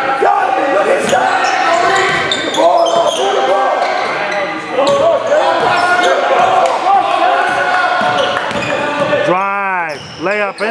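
Basketball being dribbled on a hardwood gym floor during live play, with players' voices calling out over the echoing gym noise. A loud shouted call comes near the end.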